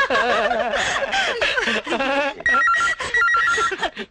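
People laughing together. About two and a half seconds in, a landline telephone starts ringing: an electronic warble that flips rapidly between two tones, in short repeated bursts.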